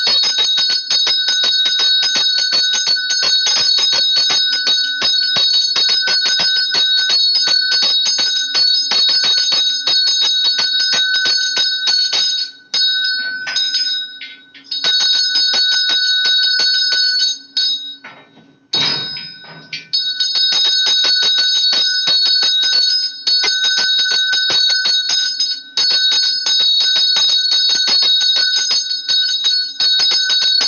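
A puja bell rung rapidly and without letup, as for the lamp offering (arati), its bright ringing tones held over a quick run of strokes. It stops briefly twice around the middle.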